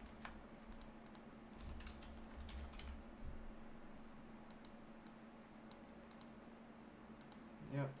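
Scattered clicks of a computer mouse and keyboard keys, single and in quick pairs, over a faint steady hum.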